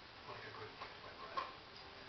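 A single sharp click from a dog-training clicker about one and a half seconds in, marking the dog's behaviour in the box, over a quiet room with faint murmuring.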